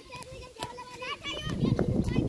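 Children's voices calling and shouting during an outdoor cricket game, with one sharp click about half a second in. The sound grows louder and denser about halfway through.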